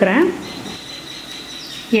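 Murukku frying in hot oil in a kadai: a steady soft sizzle, with a thin, steady high-pitched tone over it.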